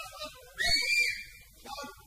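A single shrill whistle blast about half a second in, lasting around half a second. It rises a little in pitch, then holds, with an airy hiss over it.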